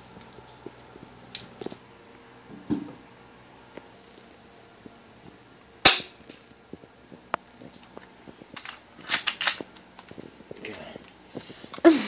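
Airsoft gun firing single shots, each a sharp snap: one loud shot about halfway through, two more in quick succession about three seconds later, and another at the very end.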